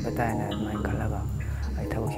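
A man speaking over background music, which holds steady low tones underneath.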